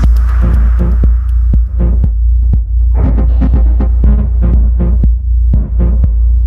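Instrumental electronic music in a dub techno/glitch style: a loud, steady deep sub-bass under sparse, irregular clicking percussive hits. A busier high-pitched layer drops away at the start.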